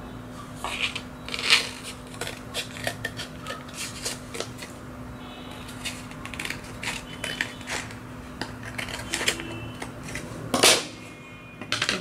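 Scissors snipping through orange card: a string of short, crisp cuts scattered unevenly, with one louder knock near the end.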